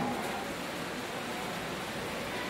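Steady, even hiss of background noise in a pause between a man's sentences, with no other sound standing out.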